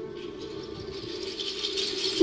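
Soft, high-pitched rattling of stage percussion, growing toward the end, over a low held note fading out, in a hushed passage of a live jazz-fusion set.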